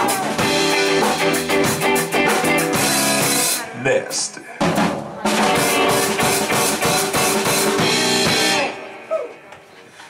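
Live band with drum kit, electric guitar and vocals playing the last bars of a song. The band cuts out about three and a half seconds in, crashes back in a second later, and dies away near the end.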